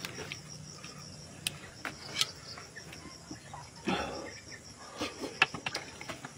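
A steady, pulsing high trill of insects chirping, with scattered sharp clicks and wet smacks from bare hands tearing apart cooked meat and from eating. The clicks are the loudest sounds, with a brief burst of handling noise about four seconds in.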